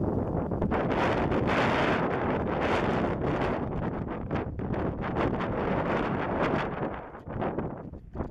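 Wind buffeting the built-in microphone of a Canon SX50 camera: a loud, gusty rush that swells and eases, dipping briefly near the end.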